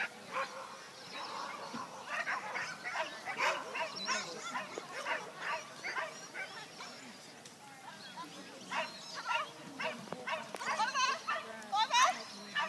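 Dog barking repeatedly while running an agility course, about two to three barks a second, easing off briefly around the middle before starting again.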